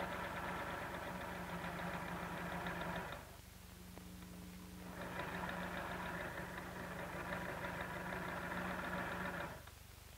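Sewing machine running as it stay-stitches cotton fabric, a steady hum in two loud spells with a softer stretch of about two seconds between them, stopping shortly before the end.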